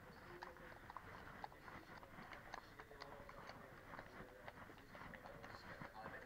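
Faint, irregular clip-clop of horses' hooves walking on a hard paved floor.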